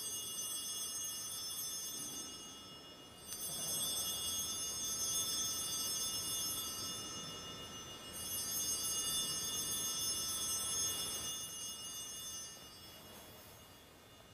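Altar bells rung three times at the elevation of the host during the consecration at Mass: a bright ringing that starts at the opening, again about three seconds in and again about eight seconds in, each ring fading away.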